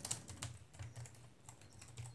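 Typing on the keys of a Chuwi Hi12 tablet keyboard dock: a run of faint, light key clicks, made to try out the key travel.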